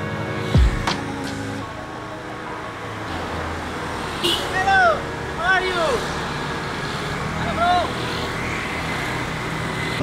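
City street traffic, motorbikes and cars going by. Background music ends in the first couple of seconds, with a deep falling thud early on. A few short voice-like calls come in the middle.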